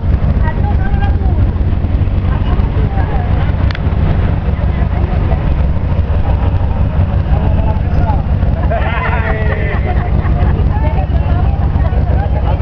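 Steady low rumble of an idling vehicle engine, with faint voices of a small group over it and a few louder voices about nine seconds in.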